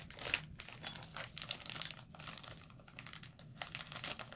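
Plastic packaging crinkling as it is handled, an irregular run of quick crackles over a faint low hum.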